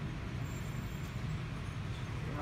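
A steady low rumble with a fainter hiss above it, even throughout with no distinct events.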